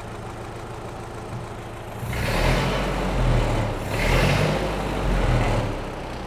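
Ford 8N tractor's four-cylinder flathead engine idling, then revved up about two seconds in, easing briefly around the middle and dropping back toward idle near the end. It is a throttle-response test on a freshly rebuilt and adjusted Marvel-Schebler carburetor, and the engine picks up revs well.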